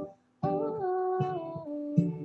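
Recorded pop song intro: short, evenly spaced acoustic guitar strums with a female voice humming a melody that glides downward over them.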